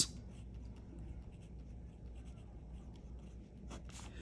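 Faint scratching of writing on a paper worksheet.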